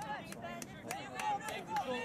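Indistinct calling and chatter from spectators on the sideline, with a few faint sharp clicks.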